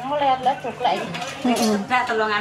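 A woman laughing and chattering, with light clinks of enamel food containers and dishes being handled.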